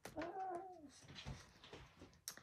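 A house cat meowing once, a short call that rises and falls in pitch, followed by soft rustling.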